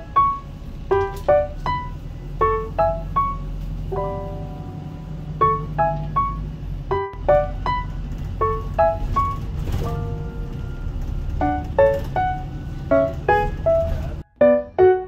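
Background piano music: a light melody of separate notes played steadily, over a low steady rumble of bus engine and road noise that drops out briefly about halfway through.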